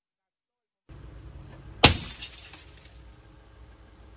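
A car windshield struck once from outside, heard from inside the car: a single sharp crack of breaking glass about two seconds in that dies away briefly, over a low background rumble.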